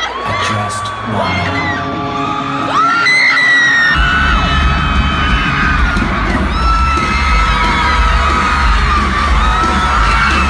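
Concert crowd screaming and cheering close to the phone's microphone, then about four seconds in loud rock music with a heavy bass comes in as the band starts playing.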